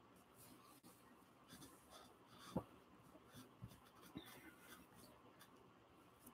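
Near silence: faint rubbing of paper pressed by hand over an inked carved rubber stamp, with three soft knocks in the second half, the first the loudest.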